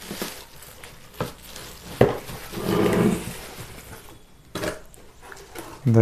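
Unpacking noises: plastic wrapping rustling and a cardboard box being handled, with a few sharp knocks and taps as items are lifted and set down.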